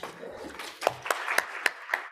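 Audience applauding, a patter of claps with a few sharper single claps standing out.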